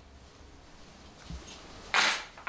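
Faint indoor room tone with a soft low knock about a second and a half in, then a sudden louder rustle right at the end.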